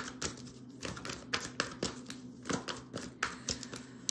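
Oracle cards being handled by hand at a table, giving irregular light clicks and taps as cards and long fingernails knock against the deck.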